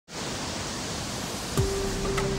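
A steady, even hiss. About one and a half seconds in, a click sounds and a steady held tone begins.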